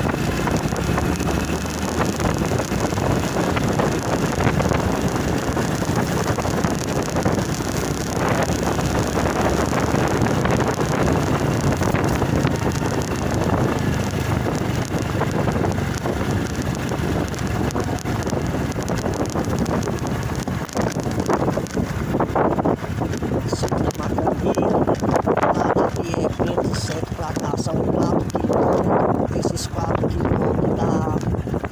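Vehicle engine running while travelling over a rough dirt track, with wind buffeting the microphone throughout.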